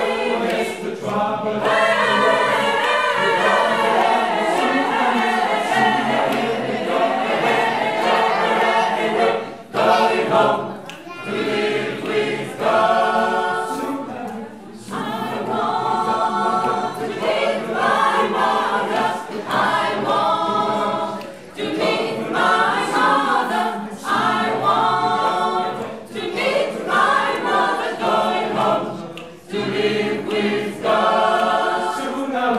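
Mixed choir of men and women singing a cappella. The sound is continuous at first; after about ten seconds it breaks into short repeated phrases roughly every two seconds.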